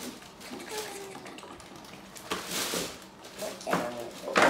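Plastic toy packaging rustling as it is handled and cut with scissors, in two short bursts, the longer a little past halfway and a brief one near the end, with a faint child's voice early on.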